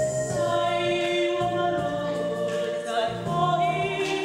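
A woman singing a gospel song with long held notes over sustained electronic keyboard chords.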